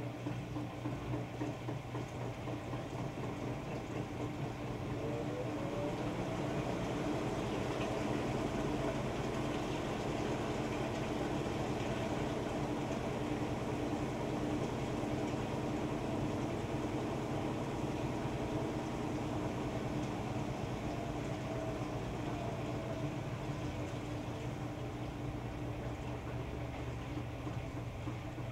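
Electrolux EFLS517SIW front-load washer turning its drum through a wet load: the motor's whine rises in pitch about five seconds in, holds steady, and falls away a few seconds before the end, over a steady hum.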